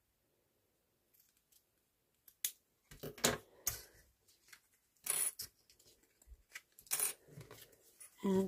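Small craft scissors snipping satin ribbon ends on card tags: a few short, sharp snips and clicks, spaced irregularly after about two seconds of quiet. Brief rustles of card being handled come near the end.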